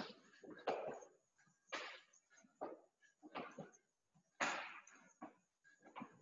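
A man breathing hard from exertion during burpees, with a heavy rasping exhale or gasp about once a second.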